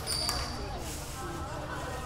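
Indistinct chatter of several people echoing in an indoor basketball gym, with a few ball bounces near the start.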